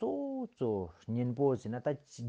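A man's voice talking, opening on a long drawn-out syllable that falls slightly in pitch, then a quick run of syllables.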